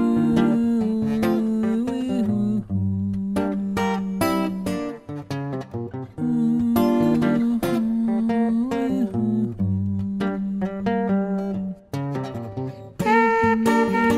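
Instrumental background music: a plucked-string melody with long held notes that slide in pitch, the same phrase coming round again about six seconds later.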